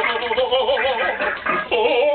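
A man's drawn-out, trembling groan, a wavering "ohhh" strained as if trying to defecate, with a short break about one and a half seconds in.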